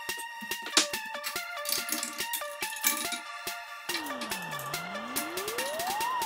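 Electronic background music: a stepping synth melody over an even ticking beat, then from about four seconds in a tone that sweeps down and back up.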